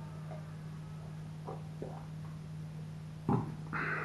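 Quiet sounds of a man drinking from a glass of stout: faint swallows, then a soft knock of the glass base being set down on a wooden table, followed by a breath out. A steady low hum runs underneath.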